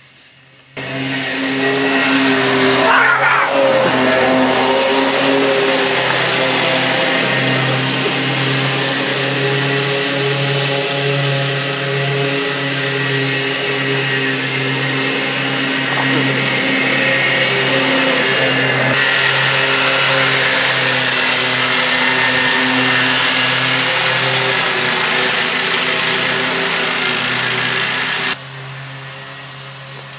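Riding lawn mower engine running steadily, loud and even. It cuts in suddenly about a second in and stops abruptly near the end.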